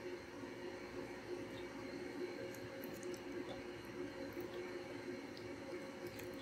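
Faint wet squishing of a spoon working through thick, gooey melted cheese and pasta in a skillet, with a few soft ticks, over a steady low hum.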